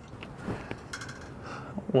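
Faint handling noise with a few light ticks: a plastic zip tie being worked around wiring to fasten it to a truck's subframe.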